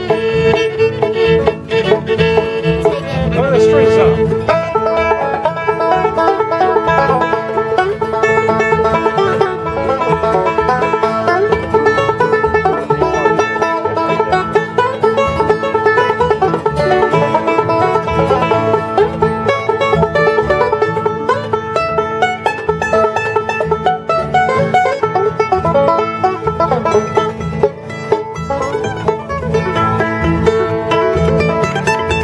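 Acoustic bluegrass jam playing an instrumental tune without a break: fiddle leading over acoustic guitar rhythm, with mandolin and upright bass joining in.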